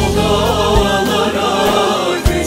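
Turkish folk song (türkü) sung by several voices together, with instrumental accompaniment and a couple of frame-drum strokes.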